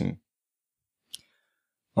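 A single sharp computer mouse click about a second in, in an otherwise silent pause.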